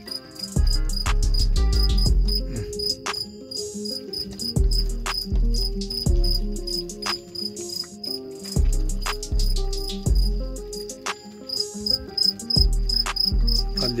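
Background music with deep bass notes recurring every second or two and a ticking beat, with a steady high-pitched pulsing chirp running through it.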